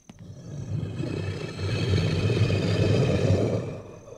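A deep, rumbling roar from the film's creature, swelling over about three seconds and dying away near the end.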